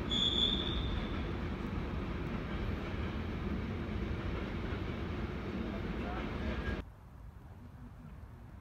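A train passing close by, a steady rumbling run with a high squeal at the start that fades within the first second; it stops abruptly near the end.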